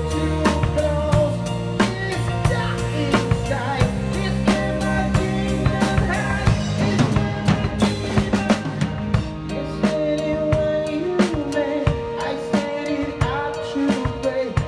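Live rock band playing, led by an acoustic drum kit. Snare, bass drum and cymbals are struck in a steady beat over held bass notes and chords.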